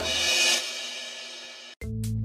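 A cymbal crash that hits suddenly, rings and fades for under two seconds, then cuts off abruptly. Near the end a bouncy music track with bass and a drum beat starts.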